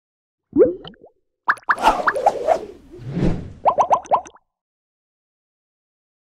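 Cartoon-style logo-intro sound effects: a string of short plops and pops with quick upward-sliding pitch, ending in a rapid run of four or five blips about four seconds in.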